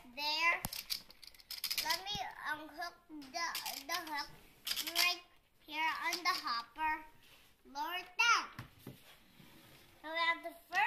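A young child's high-pitched voice chattering in short bursts with pauses, the words unclear, with a couple of light knocks early on as he handles plastic toys.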